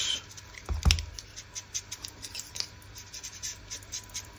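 Ink-blending sponge dabbing and rubbing ink onto the edges of a skull cutout: a run of soft, quick scratches, with a couple of light knocks about a second in.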